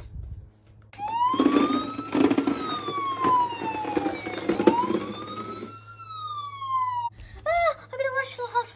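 Toy ambulance's electronic siren sound, a wailing tone that rises and falls twice over about six seconds, with a rough noise beneath it for most of that time.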